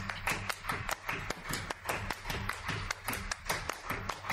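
Rapid, irregular sharp tapping, several taps a second, over a faint low hum.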